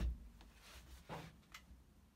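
Quiet room with a few faint handling noises: a soft brushing sound about a second in and a light click shortly after.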